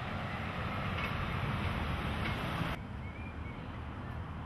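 Outdoor street ambience: a steady low rumble and hiss, with no voices. The hiss drops abruptly about three-quarters of the way through, and a faint short high chirp follows near the end.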